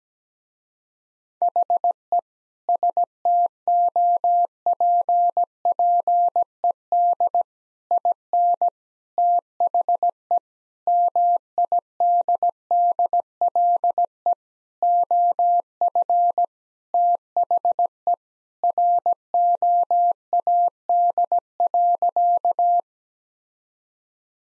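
Morse code sent at 17 words per minute as an on-off tone of one steady pitch, short dits and longer dahs with word gaps, spelling out "He stopped in the middle of the road".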